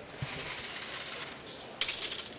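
FRC robot's climber mechanism deploying. Its motor-and-gearbox-driven arms make a rapid ratcheting whir for about a second, then two sharp hissing bursts come near the end as the pneumatic pistons push the telescoping climber arms up.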